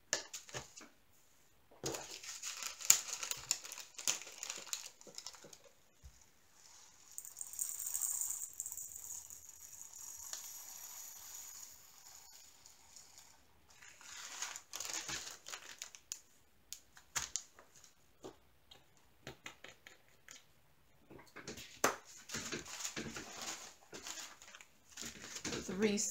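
Plastic bag of resin diamond-painting drills crinkling as it is handled, and the drills hissing as they pour through a clear plastic funnel tray into a small storage pot. Short clicks and taps come in between.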